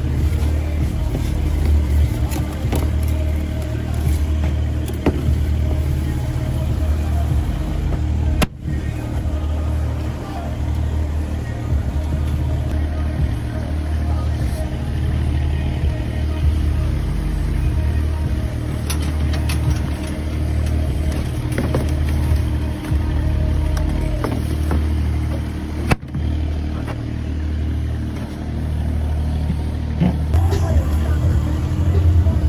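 Steady low drone of a large running engine or machine, with light clicks and knocks over it and two brief drops in level, about eight and a half and twenty-six seconds in.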